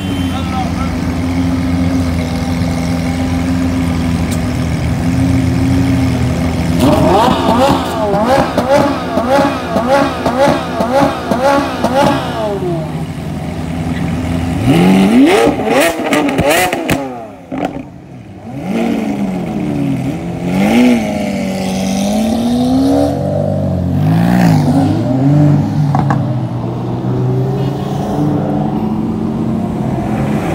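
Lamborghini Aventador's V12 running at low revs, then blipped in quick repeated revs from about seven seconds in. Near the middle comes one long rev up, and after a brief lull the engine is revved up and down again.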